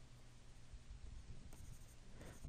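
Faint scratching of a stylus moving over a drawing tablet in smudging strokes, barely above room tone.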